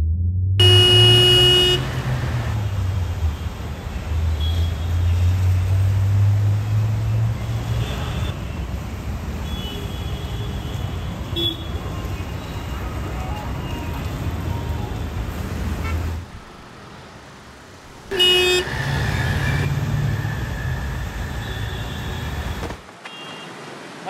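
Street traffic: road vehicles rumbling steadily, with a loud car horn blaring for about two seconds just after the start and a shorter horn toot later. The traffic sound cuts off abruptly twice, about two-thirds of the way in and again near the end.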